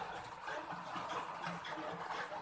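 A cat eating from a plastic dish: faint, irregular chewing and mouth clicks against a steady background hiss.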